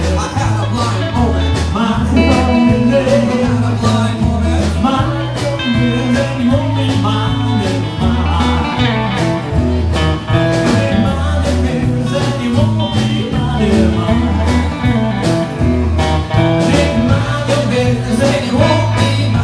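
A live band playing a country shuffle on drums, bass guitar, electric guitar and acoustic guitar, with a steady repeating bass line and drum beat.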